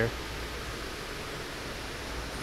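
Air conditioning running: a steady, even hiss with a low hum underneath.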